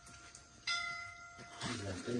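A bell ding about two-thirds of a second in, a clear ring of several steady pitches that fades over about a second.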